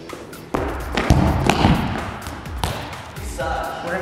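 A soccer ball kicked, then bouncing a few times on a hard indoor court floor: a sharp thud about half a second in, followed by several more over the next two seconds. Background music plays underneath.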